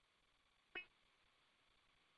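Near silence: dead air on a phone conference line, broken by one brief faint blip about three quarters of a second in.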